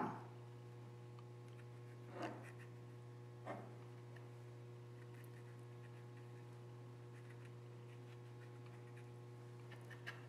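Quiet room with a steady low electrical hum, and two faint short sounds about two and three and a half seconds in.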